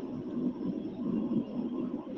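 A pause in the speech filled by a low, steady background rumble.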